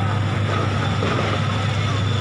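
Steady low vehicle engine hum with street noise, under faint background voices.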